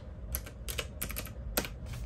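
Key presses on a desktop calculator with round keys: a quick run of about half a dozen sharp clicks.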